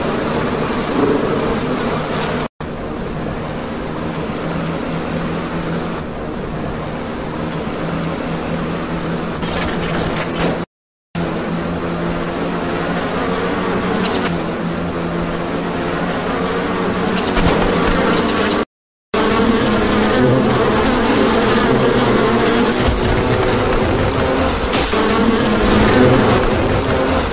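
A dense swarm of bees buzzing steadily, broken by brief silent gaps about 3, 11 and 19 seconds in, and a little louder in the last part.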